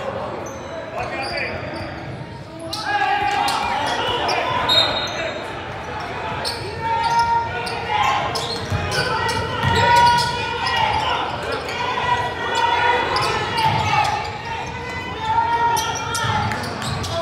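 A basketball bouncing repeatedly on a hardwood gym floor during play, echoing in a large hall, with voices underneath.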